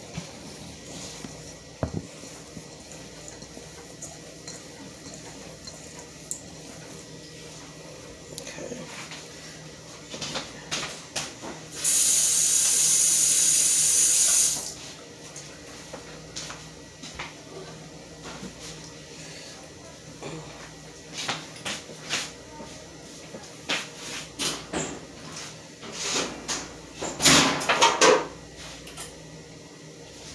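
A kitchen tap runs for about two and a half seconds, a little under halfway through, then is shut off. Scattered clicks and knocks follow, with the loudest cluster of knocks near the end.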